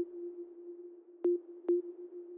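A sparse breakdown in dark progressive psytrance: a steady synth tone holds with no beat or bass, broken by short sharp blips, one at the start and two close together a little past a second in.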